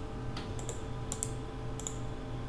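Four light computer mouse clicks, roughly half a second apart, over a low steady hum.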